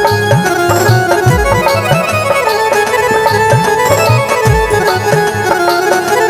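Instrumental break in a Rajasthani folk bhajan: harmonium holding steady notes over a steady hand-drum rhythm whose deep strokes bend downward in pitch.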